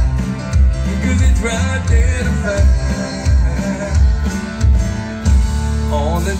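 Live country band playing an instrumental passage between sung lines, with drums, electric and acoustic guitars over a steady beat about twice a second, loud through the stage sound system.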